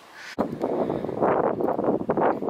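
Wind buffeting the camera's microphone in an uneven, fluttering rush that starts abruptly about a third of a second in.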